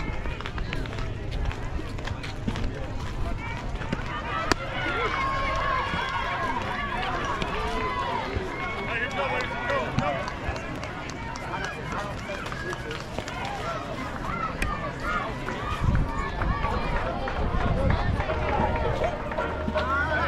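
Ballfield crowd ambience: many voices of players and spectators talking and calling out, too distant to be made out, over a patchy low rumble of wind on the microphone that grows stronger near the end.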